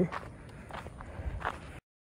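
A few faint footsteps on a dirt path, about four steps at an uneven pace, before the audio cuts out abruptly near the end.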